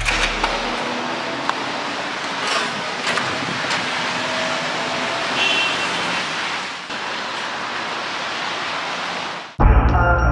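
Steady hiss of rain on a wet city street, with faint music underneath. Near the end a song's heavy, deep beat cuts in loudly.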